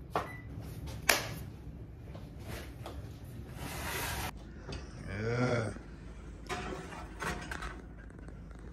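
Kitchen handling sounds: a sharp click about a second in, then an electric oven's door being opened and a metal baking pan set on the oven rack, with metal-on-metal scraping near the end.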